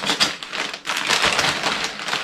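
Brown paper shipping mailer being torn open and handled by hand: a quick, irregular run of paper rips and rustles.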